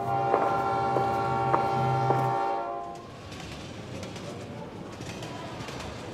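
Train horn sounding one long, steady chord that ends a little under three seconds in, with sharp clicks spaced about half a second to a second apart over it. Quieter station bustle follows.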